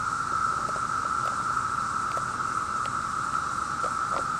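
Chorus of 17-year periodical cicadas: a steady, unbroken drone, with a few faint ticks.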